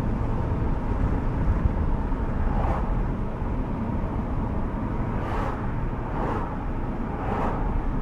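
Inside the cabin of a 1973 Mercedes-Benz 450SEL cruising at steady speed: a low, even rumble from its 4.5-litre V8 and the road, with tyre and wind noise. A few brief soft whooshes rise over it in the second half.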